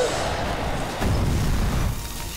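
Cartoon fire sound effect: a rushing roar of flames, with a deep rumble swelling about a second in as the blaze spreads across many buildings.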